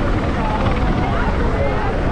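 Chatter of many people's voices on a crowded beach, over a steady low rumble.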